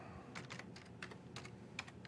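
Faint typing on a computer keyboard: a handful of separate, irregularly spaced keystrokes as a file path is typed in.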